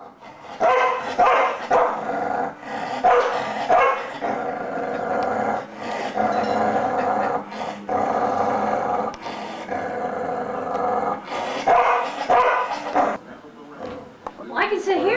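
A dog vocalizing: a run of short barking calls, then several drawn-out, pitched howling yowls of about a second each, and more short calls near the end.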